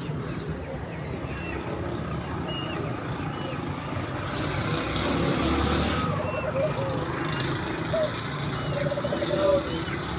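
Birds calling in an aviary: short high chirps about once a second, then lower repeated calls in the second half, over a steady low background rumble like distant traffic.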